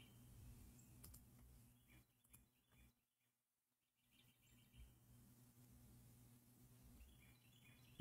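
Near silence: a faint low hum, with a few very faint clicks.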